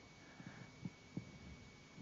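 Near silence: room tone with a faint steady high-pitched whine and two soft low thumps about a second in.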